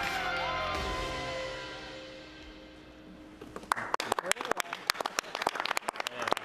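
Music from a video's soundtrack fades out over the first three seconds. Then a small roomful of people starts applauding, with quick, sharp hand claps, from about three and a half seconds in.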